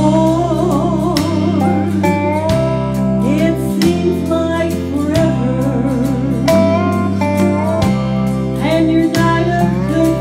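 A woman singing a Southern gospel song into a handheld microphone over a country-style backing track with steel guitar and bass, and a steady beat.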